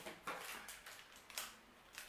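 Faint crinkling and clicking of a plastic protein-bar wrapper being handled, a few short crackles spread irregularly through the moment.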